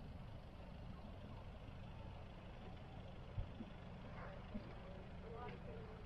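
A faint, steady low rumble with a sharp knock past the middle and a softer one about a second later, and a faint distant voice in the second half.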